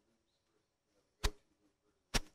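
A single sharp knock or click about a second in, short and sudden, over a faint room background.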